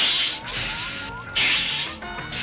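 Cartoon sound effects of a machine starting up at full power: three sharp hissing bursts, at the start, about half a second in and shortly before the end, over a run of quick rising electronic bleeps.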